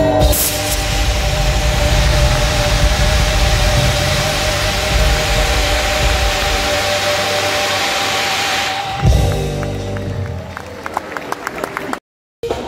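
Live band holding a long final note with slight vibrato over drums while stage CO2 jets let out a loud, steady hiss. Both cut off together about nine seconds in on a last drum hit, and scattered clapping follows.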